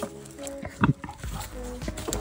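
Young wild boar grunting in short bursts, the loudest just before a second in.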